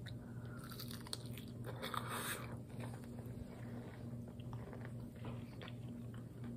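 Faint crunching and chewing as a crispy fried chicken finger is bitten into and eaten, with the loudest crunch about two seconds in.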